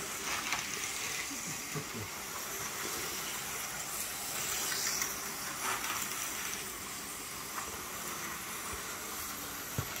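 Vintage 1970 slot cars and an electric model train running on their tracks: a steady hiss of small motors and wheels with no clear tone.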